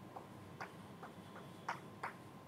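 Chalk tapping and scraping on a blackboard as a formula is written: a run of short, irregular clicks, about five in two seconds.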